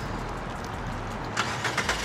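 Steady low hum of a motor vehicle's engine running, with a few quick clicks about a second and a half in.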